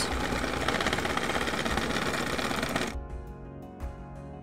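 Electric hand mixer running at speed, its beaters working mashed bananas into a wet batter with a fast, even buzzing whir. It switches off suddenly about three seconds in.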